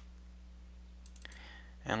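A computer mouse double-clicked: a few faint, quick clicks a little past halfway, over a low steady electrical hum.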